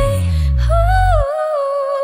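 A female voice holds a wordless "hoo" over a pop backing track, the note sliding upward and back in a short melodic run. The low bass drops out abruptly a little past halfway, leaving the voice more exposed.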